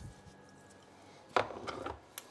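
A mostly quiet kitchen. About a second and a half in comes a single sharp knock, followed by a few faint ticks, as a kitchen container is handled.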